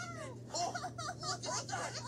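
A children's TV show's soundtrack playing through a tablet's small speaker: short, high vocal cries whose pitch slides up and down, with no words. A steady low hum lies underneath.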